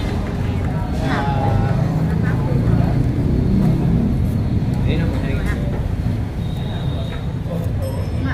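Broken snatches of voices over a steady low rumble of road traffic, the background noise of a busy street-side eatery.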